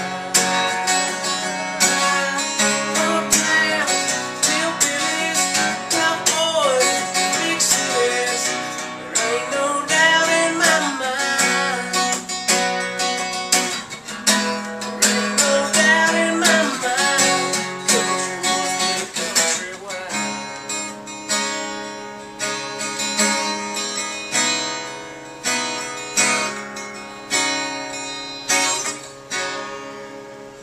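Acoustic guitar strummed, with a man singing over it until about two-thirds of the way through. After that the guitar plays on alone, its strums dying away near the end.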